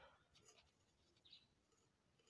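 Near silence, with faint, brief scratches of a pen writing on paper.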